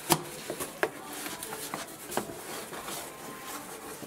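Stiff cardboard pieces of a life-size standee being handled and fitted together: a sharp knock near the start, then a few lighter taps and cardboard rubbing against cardboard.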